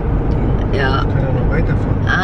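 Steady road and engine rumble inside the cabin of a car moving at highway speed, with brief bits of voice over it.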